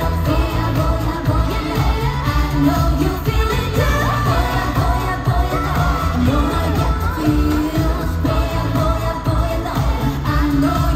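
Upbeat K-pop song from a girl group on stage, with female voices singing over a pop backing track with a steady heavy beat, played loud through the arena's sound system.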